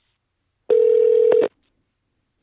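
One steady telephone line tone, under a second long, heard through the phone after a keypad button is pressed, as the call is put through to a recorded message.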